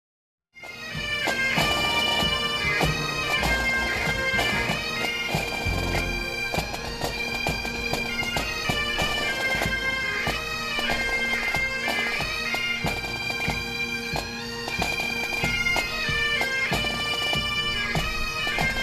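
Scottish Highland bagpipes playing a welcome tune: a melody on the chanter, broken by quick grace notes, over steady unchanging drones. The music starts suddenly about half a second in and then runs on loud and unbroken.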